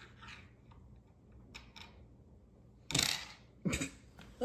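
Pennies being struck with the hand and sent sliding across a wooden shove ha'penny board, with faint clicks at first and then two sharp hits with short scraping tails near the end.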